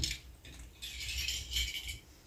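Small plastic toy figurines being gathered up by hand: a knock at the start, then a rattling clatter of little pieces knocking together for about a second.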